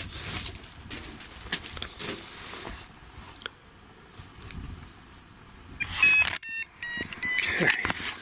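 Electronic beeping from a device: a rapid run of short, high-pitched beeps starting about six seconds in and lasting under two seconds, after several seconds of faint handling noise.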